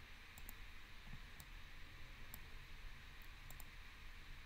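Faint, sharp clicks of a computer mouse button, about seven of them at uneven intervals, over a steady low hiss. The clicks come as edges are selected to fasten two parts together in a CAD program.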